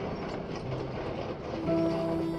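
Mechanical rattling and rumbling sound effect of a tracked robot rover, with soft music beneath. Sustained music tones come back in near the end.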